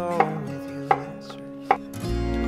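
Kitchen knife chopping food on a cutting board: three sharp strokes, about three-quarters of a second apart.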